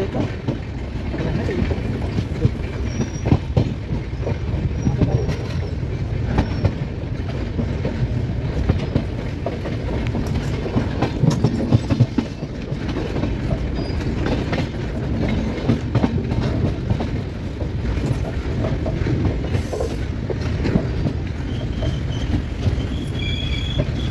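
Train rolling along the track, heard from an open coach doorway: a steady low rumble of the wheels with irregular clicks and clacks as they run over rail joints and points, and a few brief high tones near the end.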